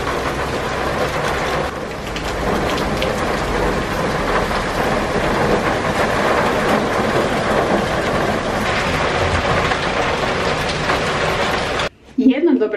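Heavy rain from a storm downpour falling steadily.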